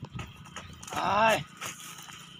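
A man's voice making one drawn-out wordless call about a second in, its pitch rising and then falling.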